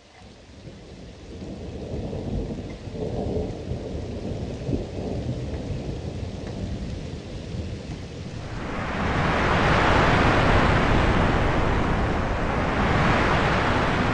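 Thunderstorm sound: low thunder rumbling that fades in and builds, then about eight seconds in a loud rush of heavy rain that swells twice.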